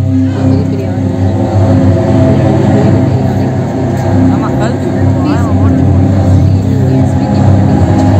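Loud recorded soundtrack played over an auditorium PA during a stage skit, with a deep steady rumble underneath and voices mixed in. A few short wavering high tones come about halfway through.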